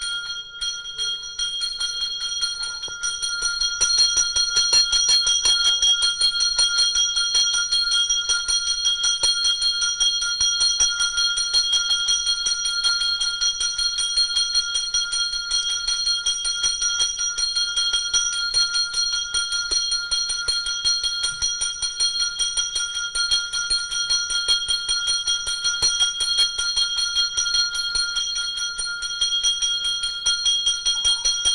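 A small temple bell rung rapidly and without pause, a continuous high metallic ringing that grows louder about four seconds in.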